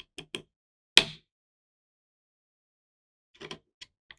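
A few small clicks as an Allen wrench and grip screws are handled on an air rifle's plastic pistol grip, with one sharper click about a second in. A short lull follows, then a few faint clicks near the end.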